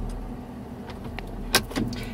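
Ford F250's 6.7-litre V8 diesel idling, heard from inside the cab as a low, steady hum. A few light clicks sound over it, the most distinct about one and a half seconds in.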